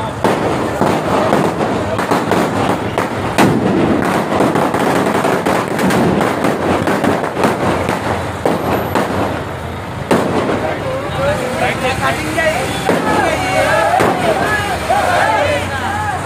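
A string of firecrackers going off in rapid, irregular cracks over a noisy crowd. From about eleven seconds in, the crowd's raised, shouting voices take over.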